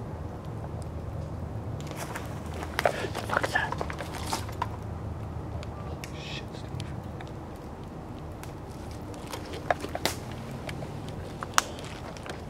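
Spirit box radio-sweep device running: a steady static hiss and hum broken by scattered clicks and crackles, with a few short choppy bursts of sound between about two and five seconds in.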